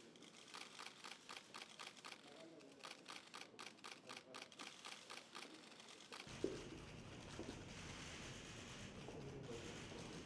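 Camera shutters clicking in quick succession, about three or four a second, for roughly six seconds, then stopping. Faint room murmur follows.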